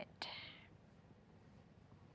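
Near silence: quiet studio room tone, with a faint click and a brief faint trailing sound in the first half-second.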